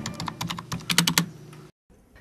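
Typing on a computer keyboard: a quick run of keystroke clicks that thins out and stops a little over a second in.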